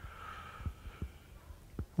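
A few soft, low thumps at uneven spacing over faint room tone: footsteps on the platform as the preacher steps behind the pulpit.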